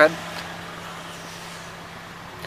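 A car engine idling, a low even hum with no change in pace.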